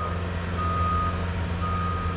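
Electronic beeper sounding a single steady tone in pulses of about half a second, repeating roughly once a second, over a steady low hum.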